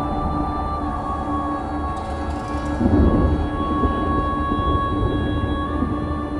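Eerie horror-film score: sustained droning tones held over a low rumble, swelling briefly about three seconds in.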